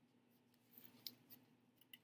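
Faint scratching and tapping of a felt-tip marker drawing on a paper plate: a handful of short strokes clustered around the middle, with one or two more near the end.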